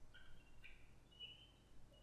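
Near silence, with a few faint, high-pitched chirps in the first second and a half.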